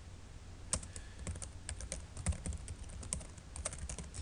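Computer keyboard keys clicking in quick, uneven runs as a word is typed, starting just under a second in.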